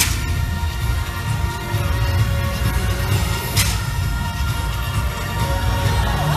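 Parade music played loudly over the floats' loudspeakers, with a heavy low end, and a brief hiss-like burst about three and a half seconds in.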